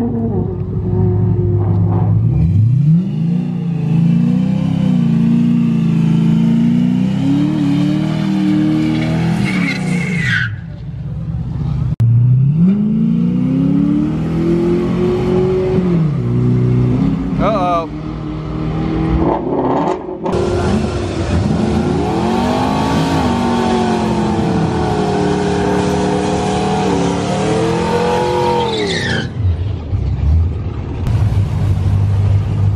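A Fox-body Mustang's engine launching off a drag-strip line and accelerating hard, its pitch climbing and dropping back at each gear change before it fades away. Later a second Mustang's engine revs up and down repeatedly at the line.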